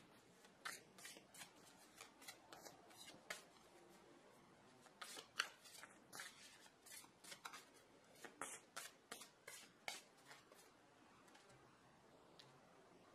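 A tarot deck being shuffled by hand: a run of faint, irregular card clicks and snaps that stops shortly before the end.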